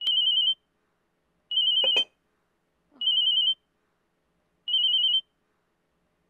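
A telephone ringing: four short warbling rings about a second and a half apart, with a sharp click about two seconds in.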